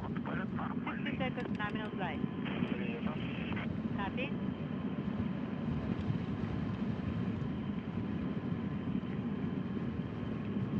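Steady low rumble of the Soyuz rocket's engines climbing away, heard from far off on the ground.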